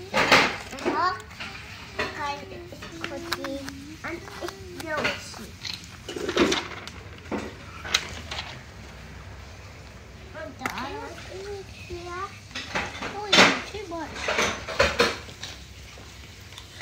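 Young children's voices talking and murmuring indistinctly, with scattered light clicks and clatter as stickers are handled and pressed onto a cardboard disc.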